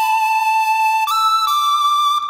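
An electronic melody playing back from the computer at its original pitch. It has held, flute-like high notes that step up to a new pitch about a second in and move again shortly after.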